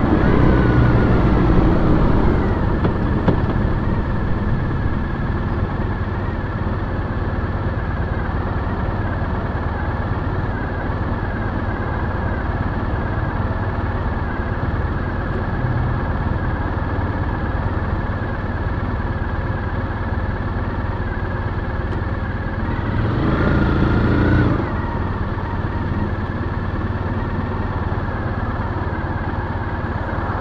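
2010 Triumph Bonneville T100's 865 cc parallel-twin engine slowing down, then idling steadily while the bike waits in traffic. About 23 seconds in there is a brief louder surge lasting a second or so.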